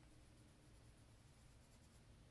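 Faint scratching of a Faber-Castell Polychromos coloured pencil shading on paper, in repeated short strokes over a low steady room hum.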